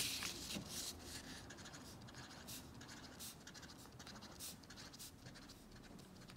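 Felt-tip marker dabbing dots onto paper one at a time, faint short strokes at irregular spacing, after a rustle of a paper sheet being handled in the first second.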